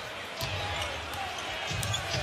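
A basketball being dribbled on a hardwood court, its low thuds standing out over the steady murmur of a large arena crowd, with a few short sharp clicks.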